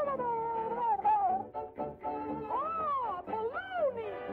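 Early-1930s cartoon soundtrack: band music with a high, wordless, voice-like sound that swoops up and down in meow-like arcs, a cartoon character's phone chatter rendered as sound rather than words.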